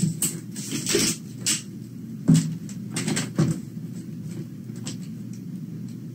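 Scissors cutting open a paper mailing envelope and the envelope being handled: a string of irregular snips, clicks and paper rustles.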